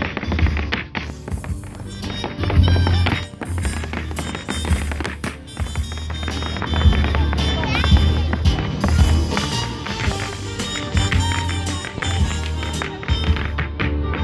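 Amplified band playing Irish dance music, with dancers' hard shoes tapping and clicking in rhythm on a plywood dance board.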